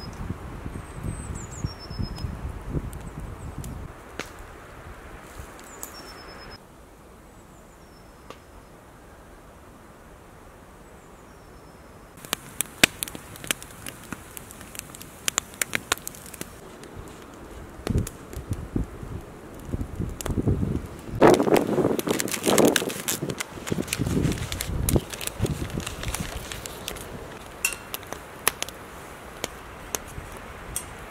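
Woodland camp ambience. A bird calls a few times with short falling notes in the first half, then a wood fire crackles and pops. The loudest part, about two-thirds of the way through, is a burst of rustling and handling noise.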